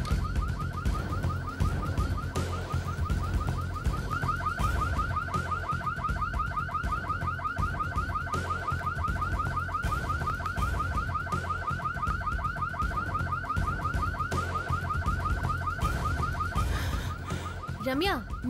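Car alarm sounding: a rapid, evenly repeating rising electronic chirp over a low steady drone. It stops about a second before the end.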